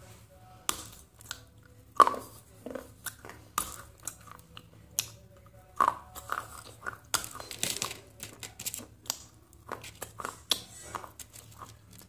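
Crunching and chewing of a crisp brown edible cup, with pieces snapped off it by hand: irregular sharp crunches, the loudest about two seconds in, and a denser run of crunching past the middle.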